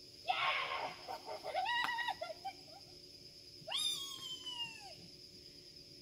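High-pitched vocal calls: a short noisy burst, a few brief pitched cries, then one long call that falls in pitch. A steady high tone sits underneath throughout.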